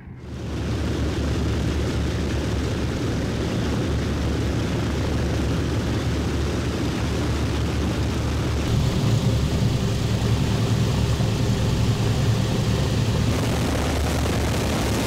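Lockheed C-121A Constellation's four Wright R-3350 radial piston engines running on the ground with propellers turning, a steady heavy drone that gets louder about two-thirds of the way through.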